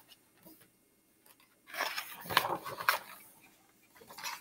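Hardcover picture-book page being turned: a rustle of paper lasting about a second and a half, with a couple of crisp crackles, starting a little under halfway in after a quiet stretch.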